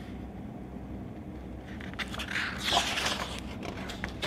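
A page of a picture book being turned by hand: a brief paper rustle and swish about two seconds in, over quiet room tone.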